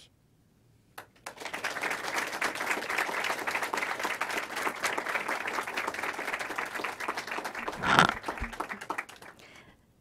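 Audience applauding, starting about a second in and dying away near the end, with a single thump near the end as the loudest moment.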